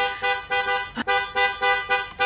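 Car horn beeped in a rapid run of short honks, about three a second, tapped out to the rhythm of a song, heard from inside the car's cabin. A sharp click sounds about a second in.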